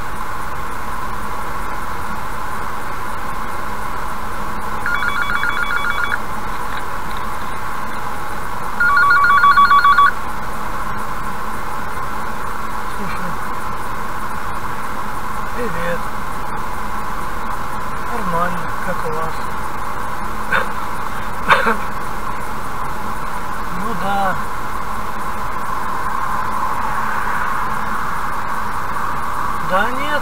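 Steady cabin noise of a car driving at highway speed, about 80 km/h. A phone ringtone sounds twice: briefly about 5 s in and louder about 9 s in.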